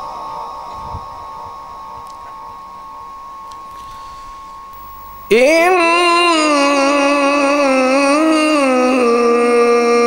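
A man's chanted recitation through a PA system: after a quieter stretch with a faint steady tone, he begins a loud, long drawn-out note about five seconds in, its pitch wavering slowly in melismatic style.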